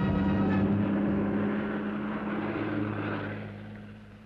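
Bus engine running with a steady low hum as the bus drives away, fading out over the last second or so.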